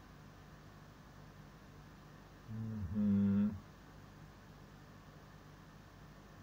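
A man's short two-note hum, low then higher and louder, like an agreeing 'mm-hmm', about two and a half seconds in, over a faint steady background hum.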